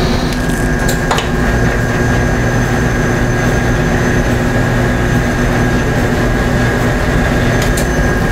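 Motorized hoist of a CHA e-beam evaporator raising its stainless-steel bell-jar chamber: a steady motor drone with a thin high whine, and a click about a second in.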